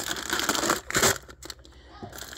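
Plastic bags of dried beans crinkling and rustling as a hand rummages through them, with a louder crackle about a second in.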